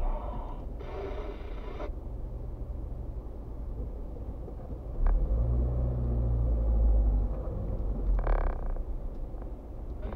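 Low rumble of a car's engine and tyres heard inside the cabin while it creeps forward in slow traffic, swelling for a few seconds around the middle. Brief hissing bursts about a second in and near the end, and a single click about halfway.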